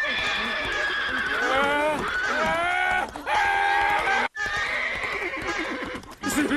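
A cartoon horse whinnying in long, high, wavering calls that swoop and fall. A brief silent break comes a little past four seconds in.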